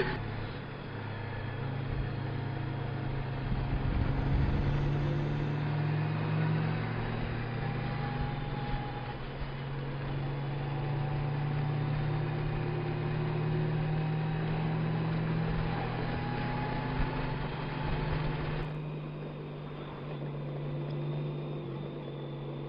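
Touring motorcycle engine running at road speed under the rush of wind and road noise, its low drone stepping up and down in pitch several times as the bike rides through the curves.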